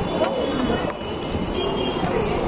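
Restaurant din of voices and music, with two clinks of cutlery about a quarter second and about a second in.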